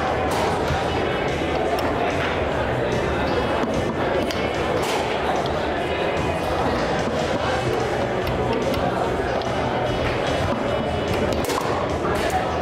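Foosball ball knocking against the figures and walls of a foosball table in sharp, irregular strikes during play, over a steady background of hall chatter and music.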